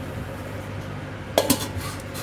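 A stainless-steel lid set down over a cooking pot, giving two quick metallic clinks about one and a half seconds in, over a steady low hum.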